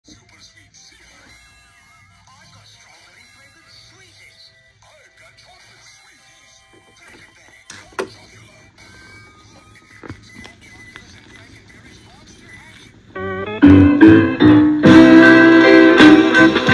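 Faint background with a couple of sharp clicks at about 8 and 10 seconds. About 13 seconds in, a 1960s soul 45 starts playing on a vintage Teppaz portable record player, opening with a guitar intro.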